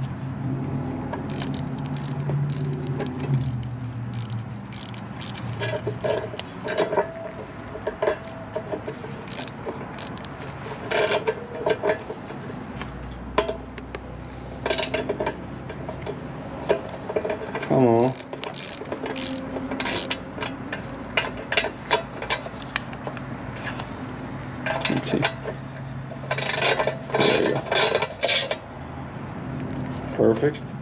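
Small hand ratchet with an 8 mm socket clicking in repeated short runs as the cam cover's bolts are turned in, over a low steady hum.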